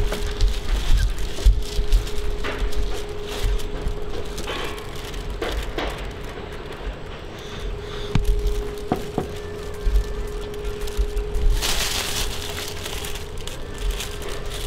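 Wind buffeting a handheld camera's microphone in gusts, with rustling and a few light knocks from handling, over a steady hum.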